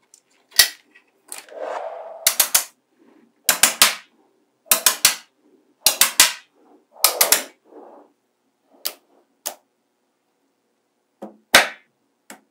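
Small neodymium magnetic balls snapping together as rows and blocks of them are joined: sharp clicks in quick clusters of two or three, with a short rattle of loose balls about two seconds in. The clicking pauses for nearly two seconds near the end, then resumes.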